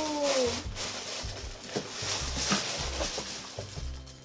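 A drawn-out, falling "ooh" of delight trails off in the first half second, then tissue paper rustles and crinkles as a pair of boots is pulled out of a cardboard shoebox.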